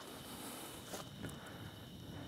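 Faint outdoor ambience: a steady, faint high-pitched hum with a few soft clicks about a second in.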